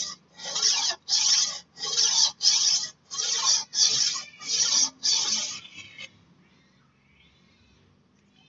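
Golok (machete) blade stroked back and forth across a Panda-brand combination whetstone: about nine raspy grinding strokes, a little under two a second, ending about six seconds in.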